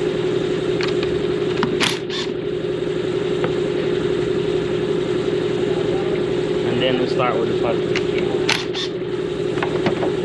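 Shop air compressor running with a steady hum, with two pairs of brief sharp noises about 2 s and 8.5 s in.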